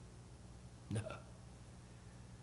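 A man's single short spoken "no" about a second in; otherwise quiet room tone.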